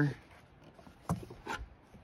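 Two light knocks of the wooden game board and its frame being handled, a little over a second in and again about half a second later.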